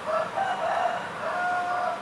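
A rooster crowing once: a few short notes followed by a long held final note, lasting nearly two seconds.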